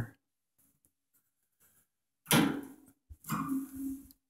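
Handling noise as the wire fan guard of an exercise bike is worked into its rubber connectors: two short scraping rustles in the second half, with a small click between them.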